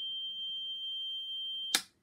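Sulis Mk3 Professional remedy machine giving a steady, high-pitched electronic beep as a channel is activated, cut off by a sharp click near the end.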